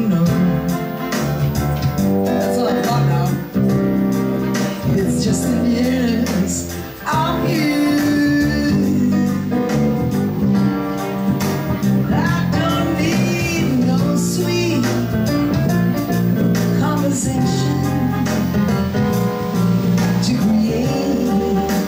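Live jazz: a woman singing into a microphone over guitar accompaniment.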